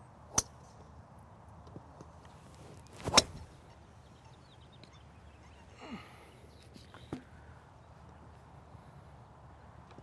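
A TaylorMade SIM 3-wood striking a golf ball off the range turf: one sharp crack of impact about three seconds in. Fainter sharp clicks come before and after it.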